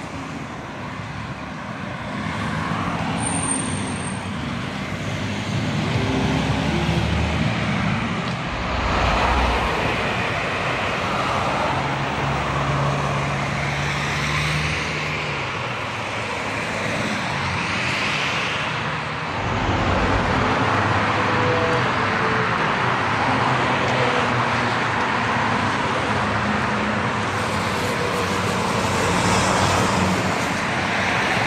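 Road traffic: cars driving past on a multi-lane road one after another, with tyre noise and engine hum swelling as each approaches and fading as it goes.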